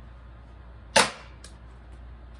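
A BB gun fired once at a cardboard box: a single sharp crack about a second in, followed about half a second later by a much fainter click.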